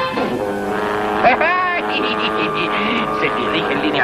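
Cartoon soundtrack: sound effects and music, with steady droning tones, a quick rising-and-falling glide about a second in, and short repeated bursts later on.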